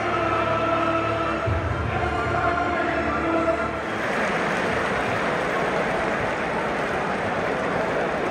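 Football stadium crowd noise with sustained music for the first few seconds, then a full crowd roar from about four seconds in.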